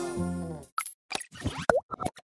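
The song's sustained instrumental accompaniment dies away in the first half second, then a quick run of short cartoon-style plops and boings, several with quick pitch sweeps, from an animated end-card jingle.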